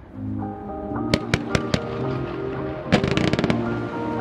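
Background music over fireworks going off. Sharp pops come about a second in, and a burst of crackling follows around three seconds in.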